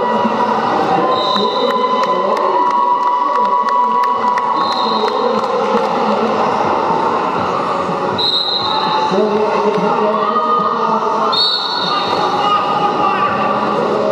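Spectators in a large hall shouting and chanting over the rolling and clatter of quad roller skates on a wooden sports floor during a roller derby jam, with a quick run of sharp clicks in the first few seconds.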